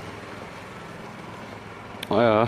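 Steady low hum of a vehicle engine with road noise, even in level throughout.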